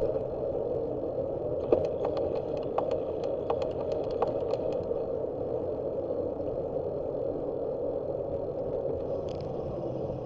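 Steady rush of wind on the microphone and tyre noise of a bicycle rolling along an asphalt street, with a run of light clicks and rattles from about two to five seconds in.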